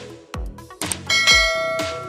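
Intro music with a steady beat of about two thumps a second. About a second in, a bright bell-like chime rings out and slowly fades: the notification-bell sound effect of an animated subscribe button.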